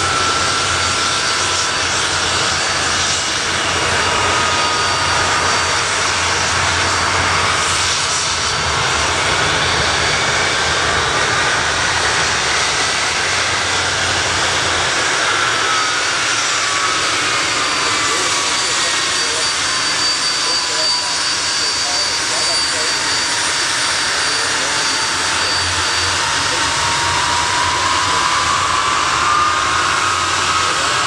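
Handley Page Victor's four Rolls-Royce Conway turbofan engines running as the bomber taxis: a loud, steady jet roar with a turbine whine that sinks and then climbs again in pitch in the second half.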